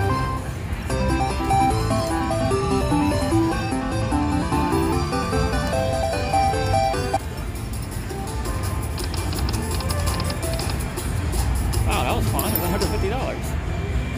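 Slot machine's bonus music: a quick run of bright stepped notes as the gold coin cash values on the reels are collected and added to the win, stopping suddenly about seven seconds in. Then steadier casino-floor noise, with a brief voice near the end.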